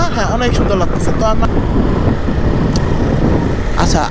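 Steady rush of wind and road noise on a rider's camera microphone while riding a Suzuki Gixxer SF single-cylinder motorcycle, with the bike's engine running underneath.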